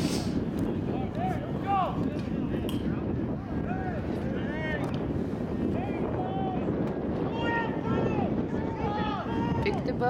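Shouts and short calls from rugby players and sideline spectators, many brief rising-and-falling calls one after another, over a steady low rush of wind on the microphone.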